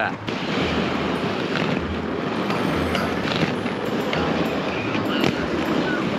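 Steady rushing noise of inline skate wheels rolling over asphalt, with wind on the microphone, lasting several seconds and broken only by a few faint clicks.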